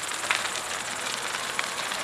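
A large wooden barn fire burning: a steady rushing noise broken by irregular sharp cracks and pops from the burning timber.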